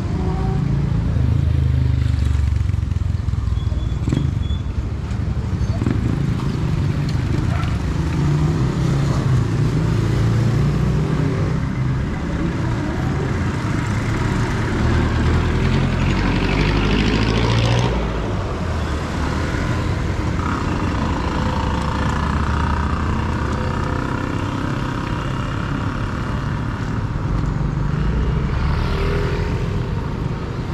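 Street traffic: motorcycle and other vehicle engines running and passing close, over a steady low rumble. A passing vehicle builds up and then drops off sharply about eighteen seconds in, with people's voices faintly in the background.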